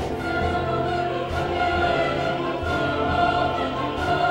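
Opera choir singing sustained chords with orchestral accompaniment.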